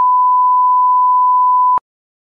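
A single steady electronic beep: one pure, unwavering tone that cuts off sharply near the end.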